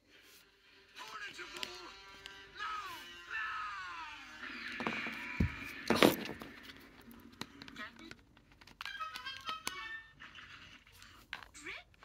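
Cartoon film soundtrack: orchestral music with falling phrases and a sudden loud hit about six seconds in.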